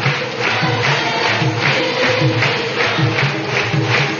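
Devotional bhajan: group singing with instruments over a steady beat of about two to three strokes a second.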